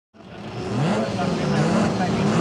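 Racing cars' engines revving together on a starting grid, their pitch rising and falling repeatedly as throttles are blipped. The sound fades in just after the start.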